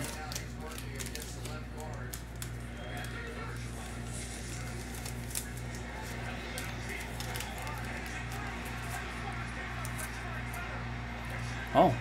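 Quiet room background: a steady low electrical hum under faint distant voices, with scattered light clicks and taps as cards and plastic card holders are handled on the table.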